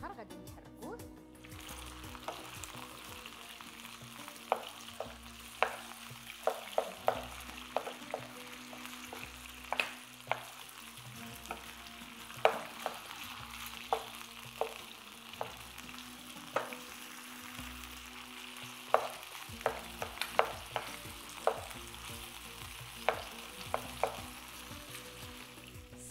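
Small cubes of chicken breast sizzling in olive oil in a nonstick pan, stirred with a wooden spatula that knocks and scrapes against the pan at irregular intervals, about once a second. The sizzle sets in about a second and a half in and then holds steady.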